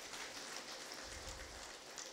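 Faint, steady hiss-like background noise with no distinct events, and a slight low rumble about a second in.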